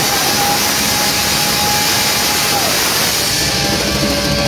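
Loud live rock band with a distorted electric guitar holding one long high note that slides down about two and a half seconds in, over a dense wash of distorted band sound.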